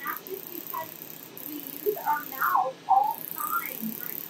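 Mostly speech, with indistinct talking loudest in the second half, over a steady faint high-pitched hiss.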